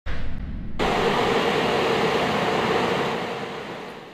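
A short low rumble, then from under a second in the steady rushing hiss of an automatic car wash's water spray or drying blowers, fading out toward the end.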